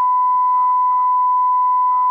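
Censor bleep: one loud, steady, high-pitched tone held for about three seconds, blanking out the caller's spoken address.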